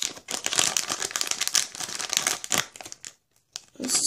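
Plastic blind bag crinkling as it is handled and squeezed to work a toy figure out, for about two and a half seconds before it stops.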